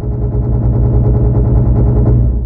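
Loud, deep synthesized drone with a fast, even flutter running through it: an intro title sound effect.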